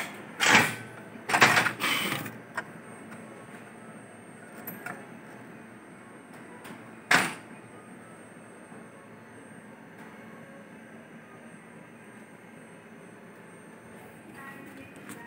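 Plastic and metal parts of a Ricoh MP 8001-series copier being handled by hand: a few knocks and sliding clatters in the first couple of seconds, then one sharp knock about seven seconds in. A steady low hum runs underneath.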